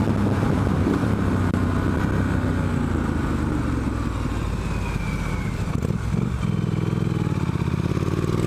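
Triumph Street Scrambler's 900 cc parallel-twin engine pulling hard under acceleration, heard from the rider's seat, with a short break in the engine note about six seconds in.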